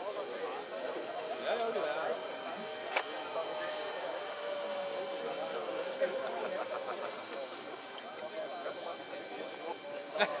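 Electric ducted fan of a Zephyr RC jet, a 90 mm Demotech Midi-Fan impeller, whining in flight at reduced power; the high whine slides slowly down in pitch and fades out about eight seconds in.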